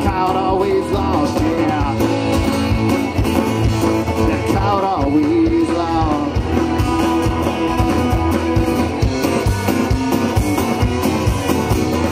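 A red dirt country-rock band playing live, with electric and acoustic guitars, fiddle and drums over a steady beat.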